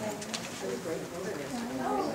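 Indistinct conversation: people talking at the same time, with no single clear speaker.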